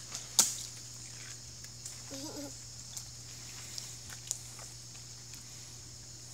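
A toddler's rubber rain boots stomping in a shallow puddle: one sharp slap about half a second in, then faint small splashes and taps. A brief short vocal sound comes around two seconds in. A steady high hiss and a low hum sit underneath.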